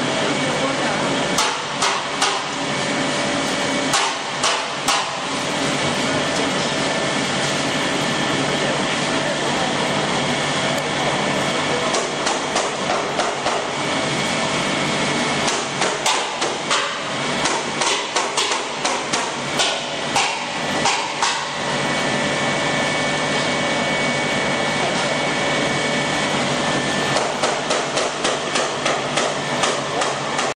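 Wheat-straw pellet production line running: loud, steady machinery noise with a few steady whining tones. Clusters of sharp clicks and knocks, several a second, come in stretches near the start, through the middle and near the end.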